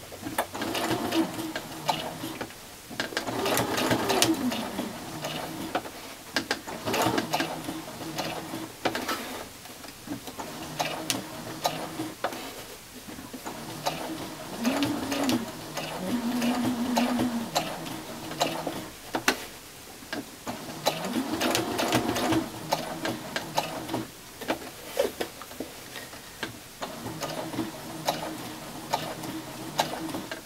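Domestic sewing machine stitching in short runs, its motor pitch rising as it speeds up and falling as it slows, with clicking in between as it stops and starts. It is quilting echo lines with a regular presser foot, pausing to lift the foot and pivot the fabric.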